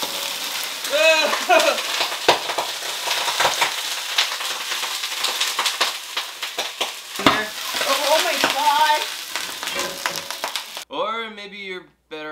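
Food sizzling and frying in a pan over a gas flame, a dense crackling hiss with many sharp clicks and clanks from the pan and stirring; it cuts off suddenly near the end.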